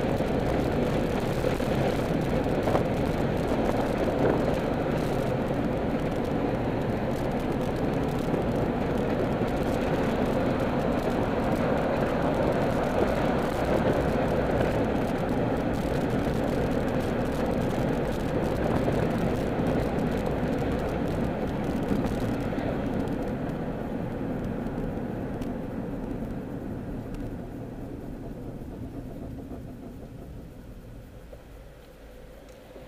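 Car road and engine noise heard from inside the cabin while driving, steady for most of the time, then dying away over the last several seconds as the car slows in traffic.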